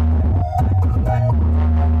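Loud DJ music with heavy, sustained bass played through a huge stacked-speaker carnival sound system (a "horeg" rig), recorded on a phone.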